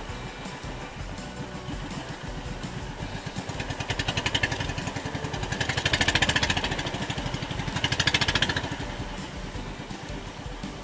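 Small outrigger-boat engine running steadily under way. It swells louder three times, about four, six and eight seconds in.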